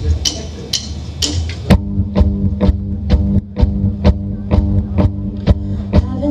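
Rock band beginning a song live: drums keep a steady beat of about two hits a second, and a little under two seconds in a sustained low chord from electric bass and guitars comes in and holds under the beat.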